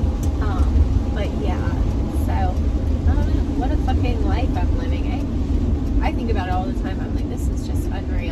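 Steady low rumble of engine and road noise inside the cab of a moving Mercedes-Benz van, with a woman talking over it in short phrases.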